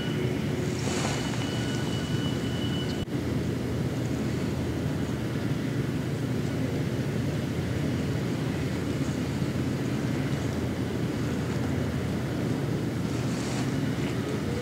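Steady low outdoor background rumble with no distinct events, dipping briefly about three seconds in.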